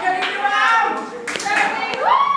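Voices of a group of people calling out and chattering, with a few sharp hand claps, the loudest about a second and a half in.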